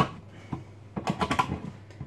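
Hand-held tin opener being cranked slowly round a tin: a sharp click, then a quick run of clicks about a second in as the cutting wheel works round the lid.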